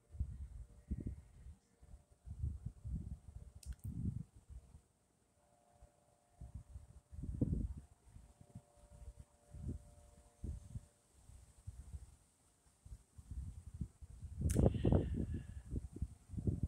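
Wind gusting against the microphone in irregular low rumbles that rise and fall, the strongest gust near the end. Under it is a faint steady hum.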